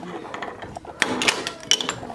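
A few sharp clicks and rattles from a sliding glass door's latch and frame being handled, about a second in and again near the end.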